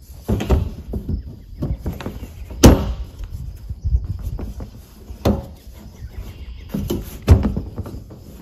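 Four or five sharp knocks and clunks a second or two apart, the loudest nearly three seconds in, as the steel top strap of an IBC tote cage is worked loose.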